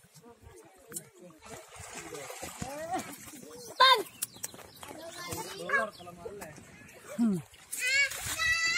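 Children and adults calling and chattering, their voices indistinct, while wading in a pool, with a loud high-pitched shout about four seconds in and light splashing of water.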